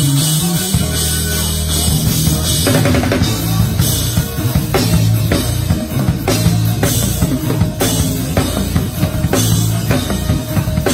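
Acoustic drum kit played hard and fast in a gospel praise break, with snare, toms, bass drum and cymbals, over an electric bass guitar. The bass slides up in pitch at the start, and the drum strokes come thicker from about three seconds in.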